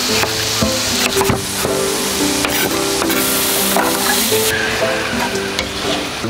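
Food sizzling as it fries in a pan on a gas hob, with scattered sharp knocks from kitchen utensils.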